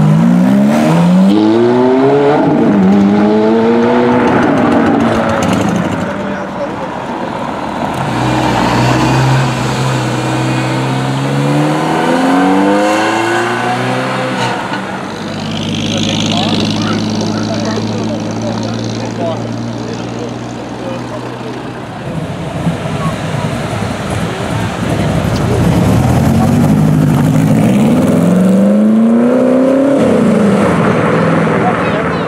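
Several cars pulling away in turn. A Ferrari F430's V8 revs up as it leaves at the start, another engine revs up around the middle, and a third near the end, with steady engine running in between.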